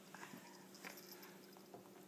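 Near silence: a faint steady room hum with a few soft clicks.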